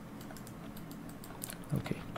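Scattered light clicks of a computer keyboard and mouse being operated, over a faint steady low hum, with a brief low sound near the end.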